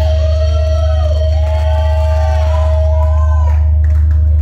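Live band's amplifiers holding a loud, steady low drone with a high feedback tone over it, while several short rising-and-falling whoops come from the audience.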